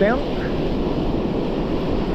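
Steady rushing noise of surf on the shore and wind on the microphone.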